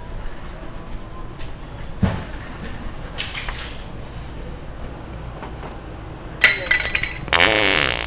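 A handheld fart-noise prank device (the original Sharter) playing loud, wet fart sounds in several short bursts, the longest and loudest a buzzy one of over half a second near the end.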